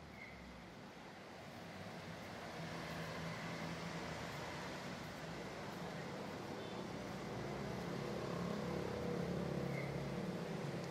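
Road traffic noise, a wash of passing cars with a low engine hum, fading in slowly and growing louder.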